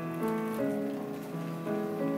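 Live band music led by a keyboard: held notes in a slow melody that moves step by step about every half second, with faint light percussion ticks.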